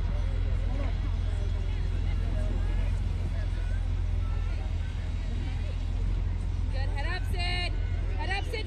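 Sideline sound of a youth soccer game: scattered, distant voices of players and spectators over a steady low rumble, with high-pitched shouts about seven seconds in.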